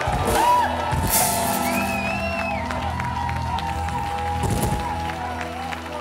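Upbeat music playing over a crowd of guests clapping and cheering.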